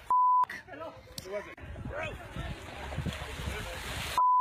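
A short single-pitched censor bleep near the start, the sound around it muted, followed by scattered voice sounds and a low rushing noise that builds from about a second and a half in.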